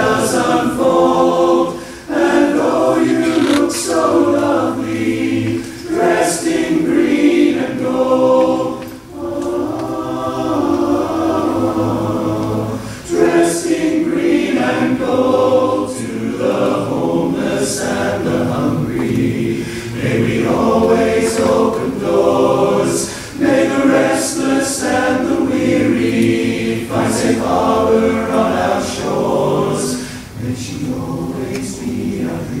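Men's barbershop chorus singing a cappella in four-part harmony: held chords in long phrases, with short dips between phrases and the 's' consonants sung together.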